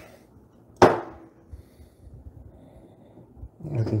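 A single sharp knock of a hard object against a hard surface about a second in, ringing briefly, followed by faint handling sounds.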